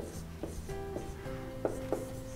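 Marker strokes and light taps on a whiteboard as a formula is written, over soft background music made of sustained notes.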